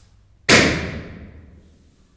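A single loud bang about half a second in, dying away in a long echo through a large underground concrete space.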